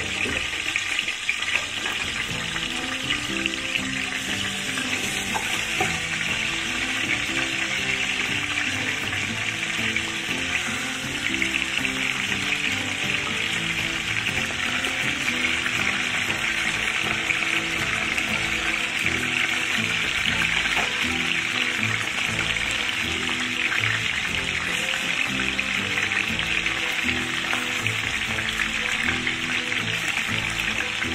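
Boiled mutton pieces sizzling steadily as they fry in hot desi ghee.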